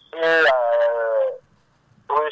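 A person's voice drawing out one long vowel for about a second and a half, steady in pitch and tailing off slightly, then a short pause.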